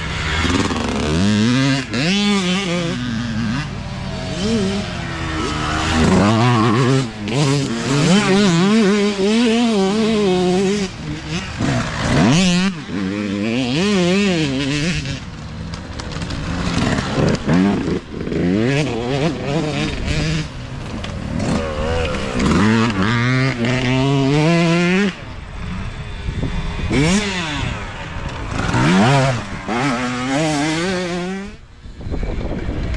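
Youth dirt bike engines revving as several bikes pass one after another through a dirt corner, the engine pitch rising and falling again and again as the riders work the throttle.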